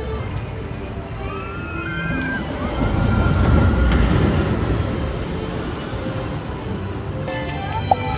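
Water rushing and splashing in a splash-ride flume channel, swelling loudest about three to four and a half seconds in, under background music. A short sharp knock comes near the end.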